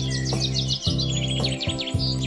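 Background music of sustained low notes, with songbirds singing rapid high trills and chirps over it.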